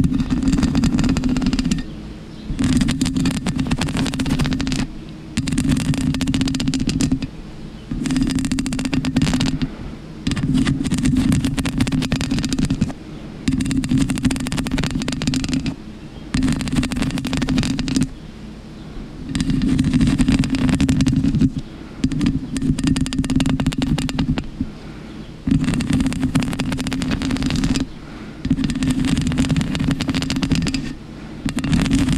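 Long fingernails scratching the black foam cover of a microphone, close and loud. The scratching comes in about a dozen rough bouts of one to two and a half seconds each, with short pauses between.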